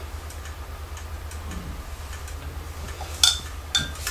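Faint, irregular light ticking, then two short hisses about half a second apart near the end: a spray bottle of kolonya (alcohol-based cologne) misted over freshly poured melt-and-pour soap in a silicone mould.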